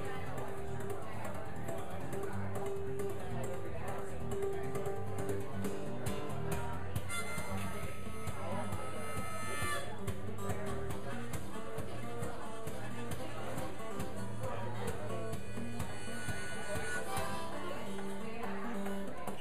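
Acoustic guitar strummed steadily under a harmonica playing an instrumental break: the harmonica holds long notes and goes into a brighter, higher passage about seven seconds in, and again near the end.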